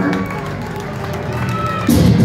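Live rock concert audio in a lull: indistinct voices and stray instrument tones over crowd noise, with the band coming in loudly near the end.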